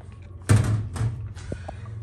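A sharp knock of a hard object being handled about half a second in, then a lighter knock about a second in, with a couple of small clicks after.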